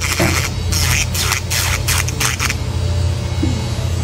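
Electric nail drill with a sanding-band bit grinding on a toenail in quick rough strokes for about two and a half seconds, then stopping, over a steady low hum.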